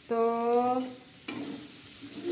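Food sizzling faintly as it fries in a pan, with a single utensil clink a little past halfway; a woman says one drawn-out word at the start.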